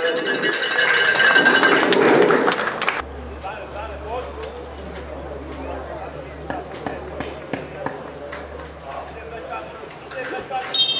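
Crowd applauding for about three seconds, cut off abruptly. It gives way to quieter football-pitch ambience: distant players' shouts, a steady low hum and a few faint knocks.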